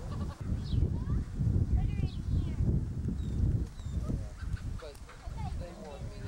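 Livestock bleating at a petting pen amid people's voices, over a steady low rumble.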